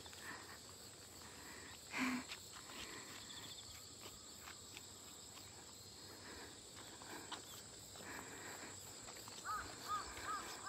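Faint rural outdoor ambience dominated by a steady, high-pitched insect drone. There is a brief laugh about two seconds in and a few faint short calls near the end.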